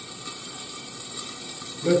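Asparagus frying in oil in a lidded pan, a steady sizzle with fine crackles.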